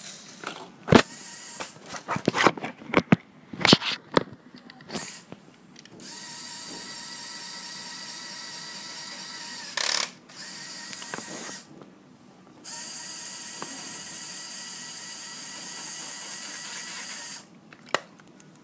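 Lego Power Functions electric motors and gearing whirring steadily in three runs of a few seconds each, driving the Lego Technic garbage truck's compactor against a ball of aluminium foil. Before that, several sharp clicks and knocks of plastic parts.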